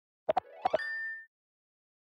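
Tablet app interface sound effects: two quick pairs of short plops as passcode keys are tapped, with a tone that glides upward and holds briefly about a second in.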